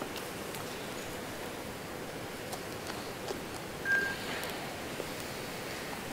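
Quiet room tone: a steady low hiss, with a faint brief sound about four seconds in.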